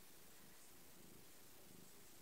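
Faint, low purring of a pet cat, swelling and fading in an uneven rhythm.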